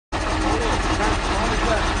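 Low, steady rumble of a military truck's engine idling, with faint voices behind it.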